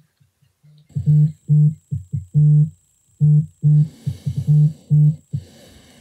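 Mobile phone buzzing on vibrate for an incoming call: a string of short, loud buzzes at one steady low pitch in an uneven rhythm.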